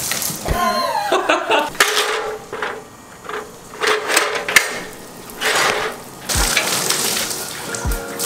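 Water from a garden hose hissing in several short bursts as it sprays into and fills water balloons, over background music.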